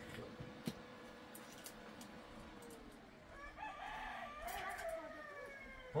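A rooster crowing once, starting about three seconds in, its long call falling in pitch as it trails off.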